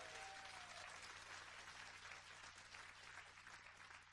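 Audience applauding faintly and steadily, greeting a band member just introduced on stage, over a steady low hum. A faint held tone fades out in the first second.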